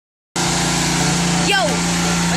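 A steady engine-like motor drone starts a moment in and holds even, with a short voice sound sliding down in pitch about one and a half seconds in.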